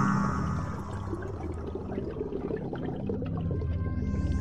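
Underwater ambience from an animated film soundtrack: a low steady drone with soft bubbling and crackling. It is quieter than the music on either side.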